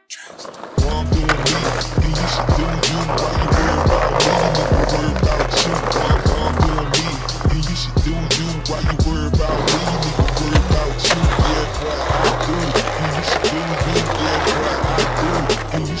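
Skateboard riding on concrete, with wheels rolling and the deck clacking and snapping on tricks and landings, under a hip-hop backing track with a deep, repeating bass line that comes in about a second in.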